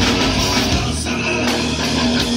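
Live rock band playing loudly: electric guitars, bass and drum kit through stage amplifiers.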